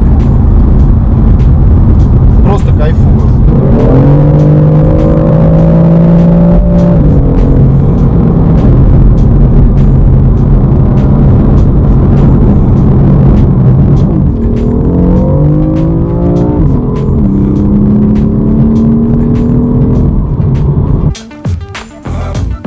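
BMW M4's twin-turbo inline-six heard from inside the cabin over a steady low road rumble while driving on the highway. The engine note rises about four seconds in and holds, then climbs again in several short rises a little past the middle before settling. Near the end the sound cuts to music.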